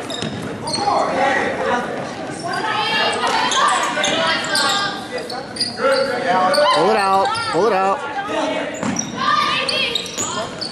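Basketball bouncing on a hardwood gym floor amid indistinct calls from players and spectators, echoing in a large gymnasium. About seven seconds in, one voice calls out loudly, rising and falling in pitch.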